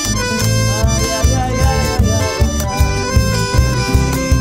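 Instrumental passage of a Latin American folk song with no singing: an accordion carries the melody over a steady, pulsing bass accompaniment.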